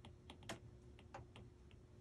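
Faint, irregular ticks of a stylus tip tapping on a tablet's glass screen while handwriting, about three or four a second, with one sharper tap about a quarter of the way in.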